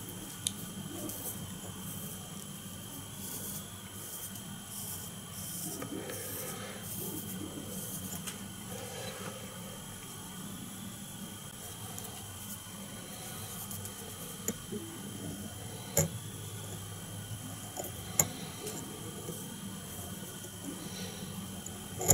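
Faint handling sounds of fly tying at the vise: soft rustling and a few small clicks as red dubbing is wound onto the hook shank with the tying thread, over a steady low hum of room tone.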